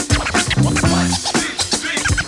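Hip hop track: a drum beat with turntable scratching over it.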